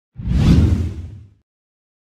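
A single whoosh sound effect for an animated graphic transition, rising fast about a quarter second in and dying away within about a second, with a deep rumble under the hiss.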